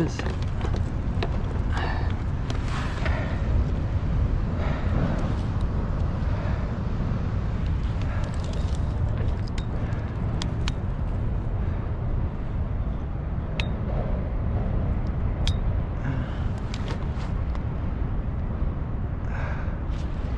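A steady low outdoor rumble, with a few sharp light clicks in the middle and faint muffled voice sounds.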